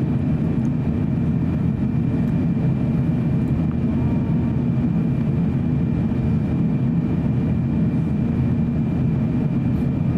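Steady cabin noise inside an Airbus A350-900 on approach: the low rumble of its Rolls-Royce Trent XWB engines and the airflow, with a thin, steady high whine over it.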